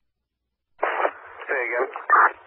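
Two-way radio scanner: a squelch click cuts off the channel hiss, then after a short silence a brief, garbled radio transmission comes through.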